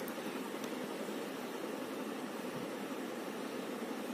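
Steady, even hiss of background room and recording noise, with no distinct events.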